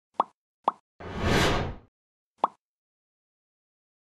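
Logo-intro sound effects: two quick pops, a whoosh of about a second that swells and fades, then a third pop.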